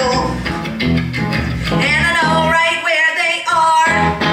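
Live band with electric guitar and bass guitar playing, a woman singing over it. The bass drops out for about a second near the end.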